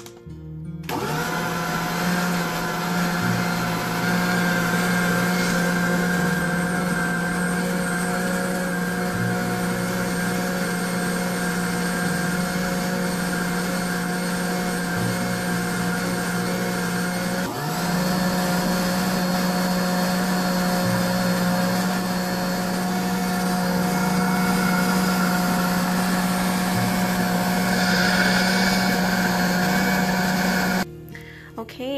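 Food processor motor running steadily as its blade purées ground beef into a paste, a loud even hum with a brief dip a little past halfway.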